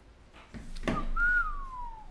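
A person whistling one long note that slides steadily down in pitch, starting about a second in, just after a short rising sound.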